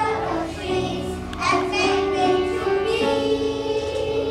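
A children's choir singing together in held, sustained notes, accompanied by a piano.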